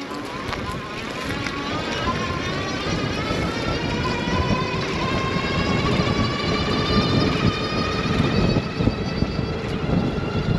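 Electric hub motor whining under a full-throttle acceleration, the whine climbing steadily in pitch as speed builds, with wind rushing over the microphone and growing louder.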